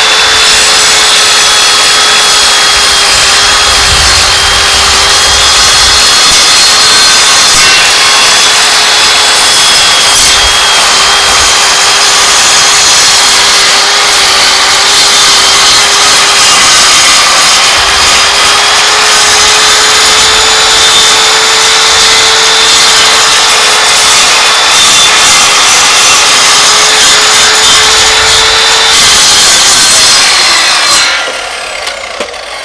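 Challenge Xtreme sliding mitre saw running under load, its circular blade slowly cutting through a solid wooden electric guitar body: a loud, steady motor whine over grinding wood noise. The whine fades out near the end.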